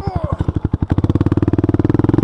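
ATV engine idling with an even putter, then revving up about a second in, its firing pulses quickening into a steady hum.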